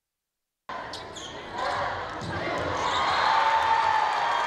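Volleyball play in a gym, cutting in suddenly: a sharp hit of the ball on the court and sneaker squeaks about a second in, then crowd noise swelling into cheering.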